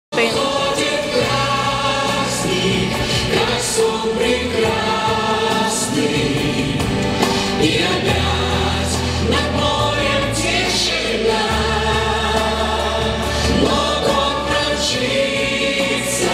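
A group of singers performing together over a pop backing track, with long held bass notes underneath.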